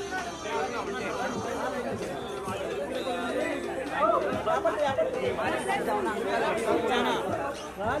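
Crowd chatter: many people talking and calling over one another at close range, a little louder from about halfway through.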